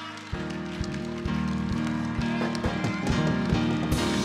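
A live band of bass guitar and drums strikes up about a third of a second in and plays on with a steady beat.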